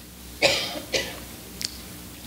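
A person coughing twice in quick succession, about half a second in.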